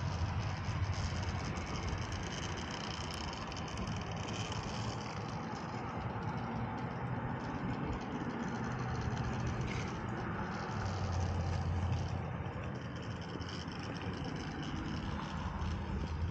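Axial SCX10 Pro radio-controlled rock crawler's electric motor and geared drivetrain whirring at crawling speed as it climbs a rock ledge, swelling and easing with the throttle.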